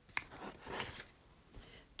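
A picture-book page turned by hand: a small tap, then a brief, soft paper swish lasting about a second.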